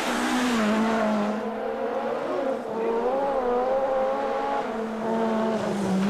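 A Group B rally car's engine running hard at high revs on the old film soundtrack: a steady engine note that wavers slightly, with a rush of noise in the first second and a half.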